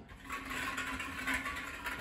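Small plastic draw balls clattering against each other and a glass bowl as a hand stirs them, a continuous rattle.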